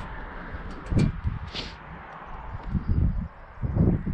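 Water trickling along a newly hung metal rain gutter during a flow test, running off freely down its slope. Wind rumbles on the microphone, with short low thumps about a second in and near the end.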